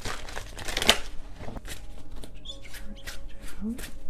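A deck of tarot cards being shuffled by hand. There is a dense run of riffling card noise in the first second, loudest just before the end of it, then scattered single card flicks and taps.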